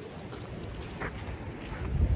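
Low wind rumble on the microphone, swelling near the end, with one brief click about a second in.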